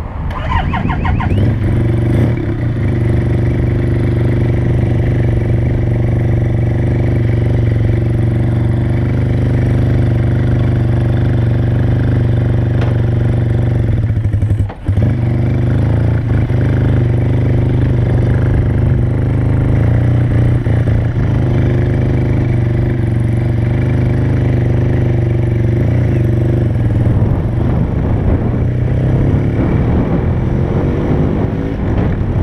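1976 Suzuki RE5's single-rotor Wankel engine rising in pitch in the first second or so, then running with a steady, even note as the motorcycle is ridden off at low speed. Its note drops sharply for a moment about halfway through.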